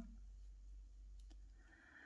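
Near silence: quiet room tone with a steady low hum and a couple of faint clicks.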